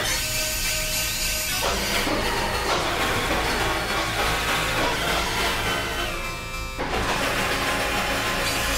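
Experimental electronic noise music: dense synthesizer drones and hissing, noisy textures over a steady low drone, with many held tones. The upper texture thins out about six seconds in and cuts back in abruptly just before seven seconds.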